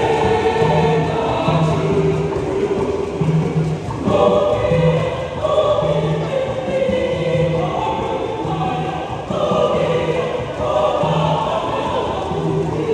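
A mixed church choir singing a song in parts, men's and women's voices together, with short low notes repeating about once a second underneath. A fuller, louder phrase comes in about four seconds in.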